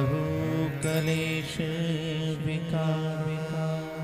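Devotional mantra chanting: long-held sung notes over a steady drone, the melody moving to a new note every second or so.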